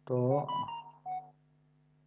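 A man's voice speaking a short phrase that ends in a few drawn-out, held syllables, then a faint steady hum.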